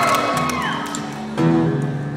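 Audience cheering with a falling whoop, dying away, then an acoustic guitar chord struck about one and a half seconds in and left ringing.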